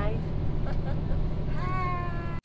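Steady low rumble of a coach bus on the move, heard inside the passenger cabin. A person's drawn-out vocal sound comes in near the end.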